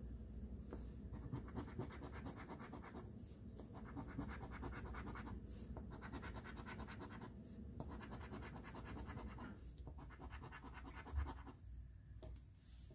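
A coin scratching the coating off a paper instant lottery ticket in rapid strokes, in about five spells with short pauses between. A single low knock comes near the end.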